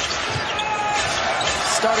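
Basketball being dribbled on a hardwood court over a steady wash of arena crowd noise.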